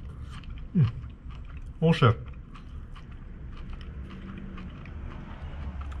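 A man chewing a mouthful of rehydrated chicken curry with crunchy cabbage, broccoli and cauliflower: soft, faint chewing noises. A short hum comes about a second in and one spoken word about two seconds in.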